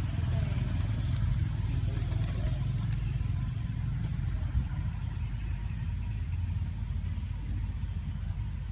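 A steady low rumble, with a few faint short crackles in the first second and a half.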